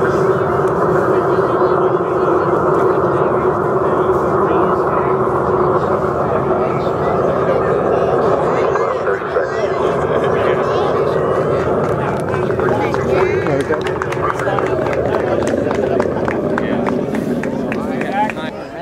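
Recorded Apollo 11 Saturn V launch roar played back over a loudspeaker, a steady, loud rushing noise with voices mixed in, thinning out about twelve seconds in.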